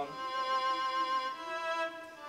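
Sampled violin preset in FL Studio's Sakura plugin playing sustained notes: a long held note, then a change to another note about a second and a half in.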